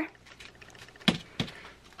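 A small plastic bag of sequins being handled: faint rustling and light ticking as the sequins shift inside, with two sharper clicks about a second in.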